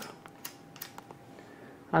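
A few faint, light clicks from a small plastic robot beetle toy being handled and fiddled with by fingers.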